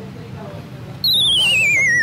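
A comedy falling-whistle sound effect: a loud, wobbling whistle tone that slides steadily downward in pitch, starting about a second in and lasting about a second and a half.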